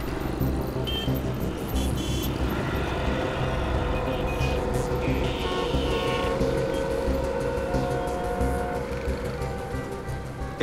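Road traffic running under background music, with a few short car-horn toots.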